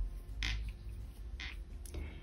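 Faint creaking and rubbing of doubled acrylic thread drawn over a metal crochet hook while a triple crochet is worked. Two short brushing strokes come about a second apart, over a low steady hum.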